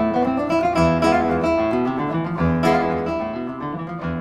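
Classical Spanish guitar with nylon strings playing a plucked melody over bass notes, each note ringing on.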